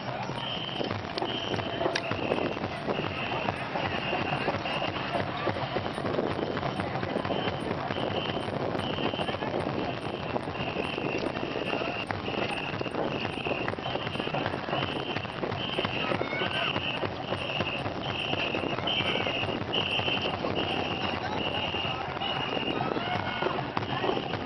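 Ghe ngo long boat crew paddling hard: short, shrill whistle blasts repeat at a steady pace, about three every two seconds, setting the stroke over a constant splashing of many paddles in the water.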